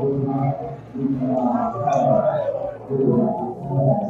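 A low man's voice humming wordlessly in long held notes that slide gently up and down in pitch.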